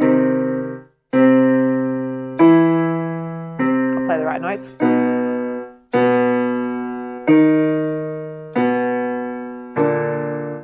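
Electronic keyboard with a piano sound playing a vocal-exercise accompaniment: notes struck about every second and a quarter, each fading before the next, the pitches shifting step by step through the pattern. A brief wavering voice sound about four seconds in.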